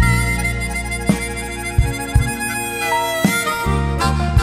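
Blues band instrumental break: a harmonica plays long held notes over bass and drums, with a few sharp drum hits.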